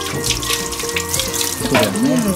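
Handheld shower hose running water into a wet Shih Tzu's coat as it is rinsed in a grooming tub, a steady hiss of spraying water, with held notes of background music under it.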